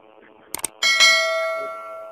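Two quick clicks, then a single bell-like chime that rings and slowly fades.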